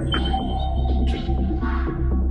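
Minimal house DJ mix: electronic music with a steady, deep pulsing bass line and sustained synth tones, with a swept noise swoosh about a second in and another near the end.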